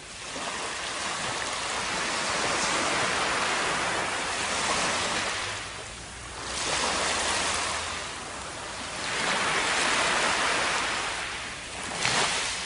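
Small waves washing up a sandy beach: a hiss of surf that swells and fades about three times.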